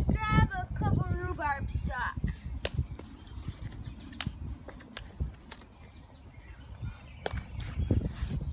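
A brief wordless voice, then plant rustling and several sharp snaps as rhubarb stalks are pulled and broken off the plant by hand.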